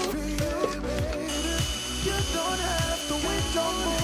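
Background music with a steady beat. From about a second in, a cordless drill runs with a steady high whine for some two and a half seconds, stopping near the end.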